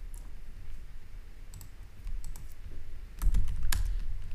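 Keystrokes on a computer keyboard: a few scattered key clicks, then a louder quick run of keypresses about three seconds in, over a low steady hum.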